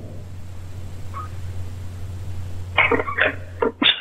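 Telephone line noise during a pause in a call: a steady low hum with faint hiss. Near the end come a few short voice sounds, under a second in all.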